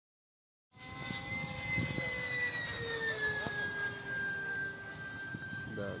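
Ducted-fan model F-16 jet flying, a steady high whine with several tones that drops slightly in pitch partway through as it passes.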